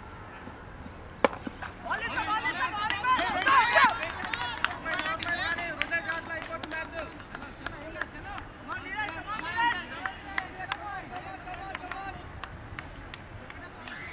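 A cricket bat striking the ball with one sharp crack, followed by several players shouting and calling out over one another, with scattered sharp clicks under the voices.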